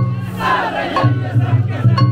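Bamboo transverse flutes (fue) playing a festival melody from a hoto lantern float, over a crowd of bearers shouting together. Sharp percussion strikes come at the start and again about a second in, and a steady low hum runs underneath.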